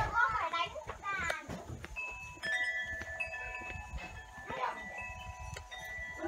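A voice in the first second or so, then a wind chime ringing from about two seconds in: several clear tones set off one after another, each ringing on and overlapping the others.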